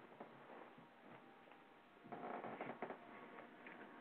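Near silence on a narrow-band call-in audio line: faint line noise with a few soft clicks and a faint rustle about two seconds in.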